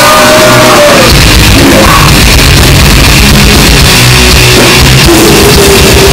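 Death metal band playing live: distorted electric guitars, bass and drums with vocals, a held vocal note at the start and another near the end. The phone recording is pushed to full level and sounds overloaded.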